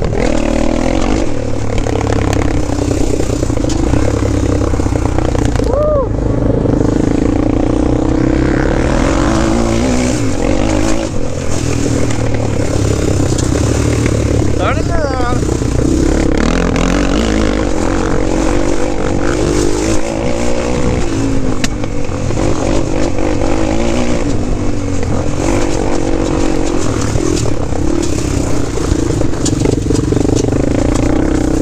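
Honda 400EX quad's single-cylinder four-stroke engine running under load while riding, its pitch rising and falling as the throttle is worked.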